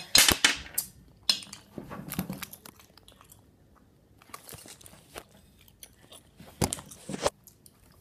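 Child chewing a piece of super-sour gum close to the microphone. Sharp, wet mouth noises come in clusters: right at the start, briefly about a second in, around the middle, and again near the end.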